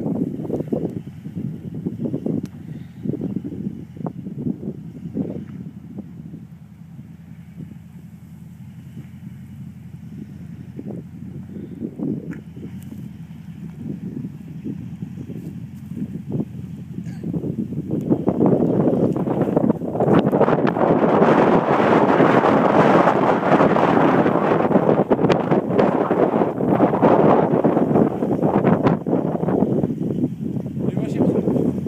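Full-size pickup truck engine working under load as the truck climbs a steep dirt hill, a steady low hum at first that grows much louder about two-thirds of the way through as the truck nears. Gusts of wind buffet the microphone in the first few seconds.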